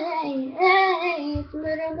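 A young girl singing a pop song, holding long notes that slide downward, with a short break about one and a half seconds in.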